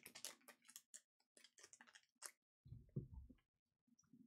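Mostly near silence with faint scattered clicks of scissors cutting the plastic shrink wrap on a trading-card booster box, and a soft low thump about three seconds in.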